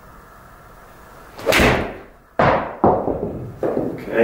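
A golf iron (PXG 0311 seven iron) swung and struck off an indoor hitting mat, the shot hit heavy (fat), with the club catching the mat before the ball. The strike comes about a second and a half in, followed by three more sharp thuds.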